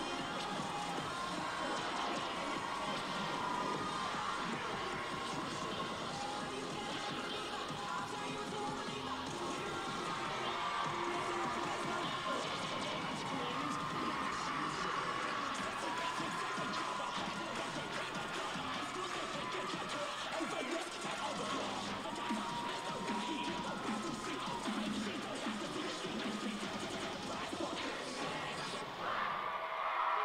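Loud cheerleading routine mix music played over an arena crowd cheering and screaming; the music stops near the end.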